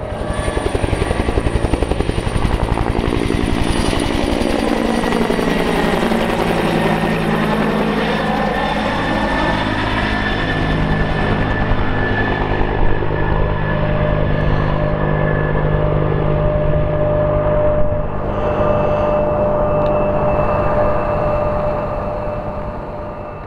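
Bell 212 helicopter in flight: a steady rotor beat with a turbine whine above it. It drops off in level near the end as the helicopter moves away.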